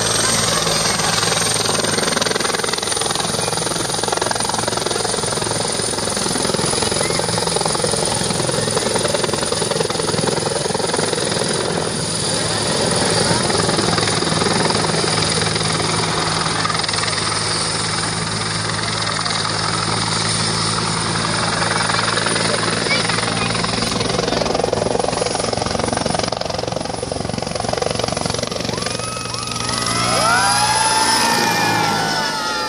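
Helicopter flying close by: the turbine's steady high whine over the constant noise of the engine and rotor.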